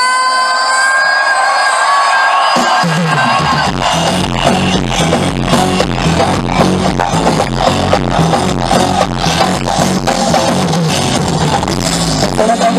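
Live pop concert music over a PA, recorded from within the crowd. One long note is held for about the first two and a half seconds, then the full band comes in with a steady beat and heavy bass.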